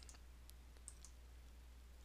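Near silence: room tone with a faint low hum and two faint computer mouse clicks, about half a second and a second in.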